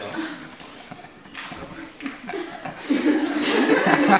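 Quiet talk and chuckling from several people, getting louder about three seconds in.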